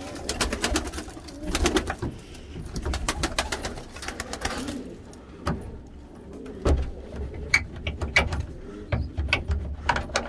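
Domestic pigeons cooing inside a loft, with rapid clicking and flapping of wings through about the first five seconds, then fewer, scattered clicks.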